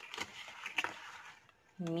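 A few soft clicks and a brief light rustle, like small objects being handled, followed by a short quiet stretch; a voice begins speaking near the end.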